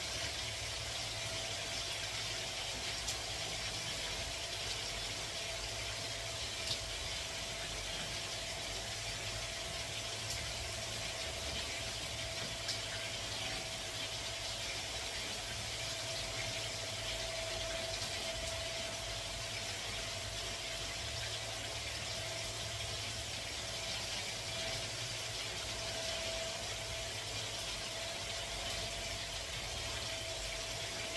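Steady machine hum with one constant mid-pitched tone, a low rumble and a high hiss, broken by a few faint clicks.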